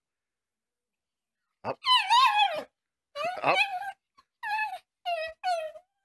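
Chihuahua whining in a run of about five high-pitched yips, the first the longest and the later ones short and falling in pitch: eager begging for a treat.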